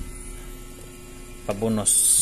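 Steady low electrical mains hum, with a short spoken word and a sharp hiss near the end.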